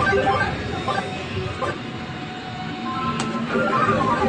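Claw crane machine's electronic jingle, a beeping tune of short stepped notes, playing over arcade background noise.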